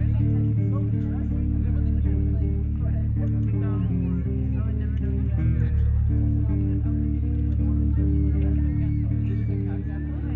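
A progressive rock song played by guitars over a steady bass guitar, in a repeating pattern of sustained notes.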